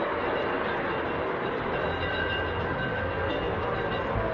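A steady, dense, rumbling noise with faint held tones, with a low hum growing stronger about halfway through. It comes from the noisy closing section of a late-1960s psychedelic rock studio recording, and no clear singing is heard.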